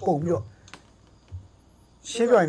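A man's voice over a video call for the first half second, then a pause broken by a faint sharp click or two.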